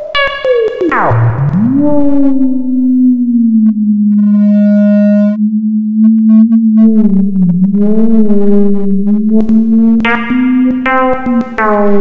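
Improvised electronic synthesizer music. About a second in, a tone glides steeply down and then settles into a low, slightly wavering drone. Shorter, higher tones come and go above the drone, and scattered clicks sound near the end.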